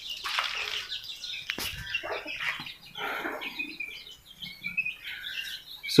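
Small birds chirping over and over, with a few brief rustling noises in between.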